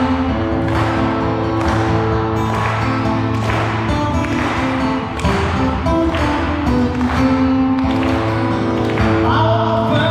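Live music: an acoustic guitar strummed in a steady rhythm, about one stroke a second, under a singing voice.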